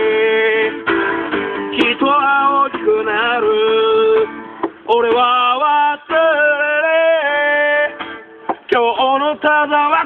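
A man singing with long held, wavering notes while strumming an acoustic guitar.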